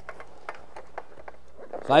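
Faint, scattered small clicks and rustles of a black fabric carrying bag being handled as a roll-up banner is laid inside it, over a low steady hum.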